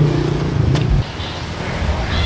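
A motor vehicle engine running with a steady low hum, which cuts off abruptly about a second in, over ongoing street traffic noise; a single sharp click comes just before the cut.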